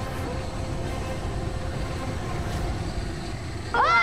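Steady low rumble with faint background music. Near the end it is cut by a loud shouting voice.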